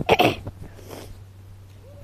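A person's single short cough at the very start.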